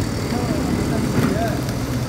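Steady low engine rumble with indistinct voices in the background.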